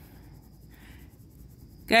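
Faint, soft scratching of a colouring tool on a printed paper game card as a small square is coloured in.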